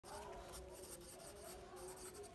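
Faint scratching of a pen writing a word by hand on paper, stroke by stroke.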